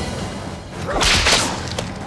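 A sharp, whip-like whoosh about a second in, lasting about half a second, over a low steady rumble.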